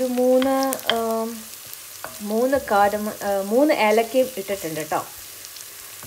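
Onions sizzling as they fry in ghee in a cast-iron pot, stirred with a wooden spoon, under a voice talking in drawn-out phrases.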